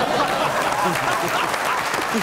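Studio audience applauding, a steady clatter of clapping with voices mixed in.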